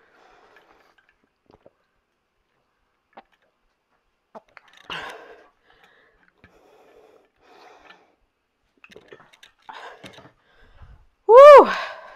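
Faint breaths and small breathy noises from a woman drinking water between exercises, then a loud "woo!" shout with a falling pitch near the end.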